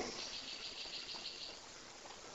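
Faint, high-pitched insect chirping in a rapid pulsing pattern, dying away about a second and a half in.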